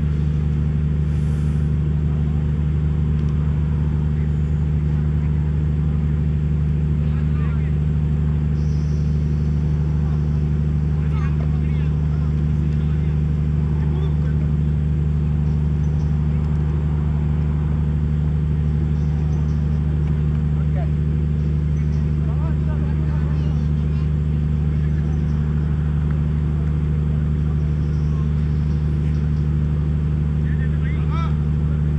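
A steady, low mechanical drone that never changes, with faint distant voices over it.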